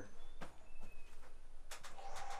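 Outdoor ambience in woods with a faint, short bird chirp and a few light clicks or knocks.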